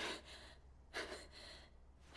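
A boy's tired, panting breaths: two faint gasps about a second apart, the breathing of someone worn out after fighting.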